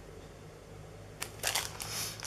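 Crafting supplies in plastic packaging being handled: after a quiet stretch, a few sharp clicks and short crinkling rustles start just over a second in.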